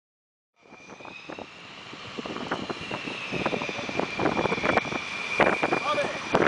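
Jet engines of Northrop F-5E/M Tiger fighters, twin J85 turbojets each, running on the runway: a steady high turbine whine over a rough, crackly rumble. It starts about half a second in and grows louder.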